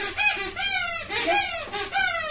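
Chickens calling close by: a run of loud, short squawks that each fall steeply in pitch, about four in two seconds.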